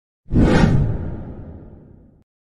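Whoosh sound effect over a logo card: a sudden loud rush with a heavy low end about a quarter second in, fading away steadily over nearly two seconds.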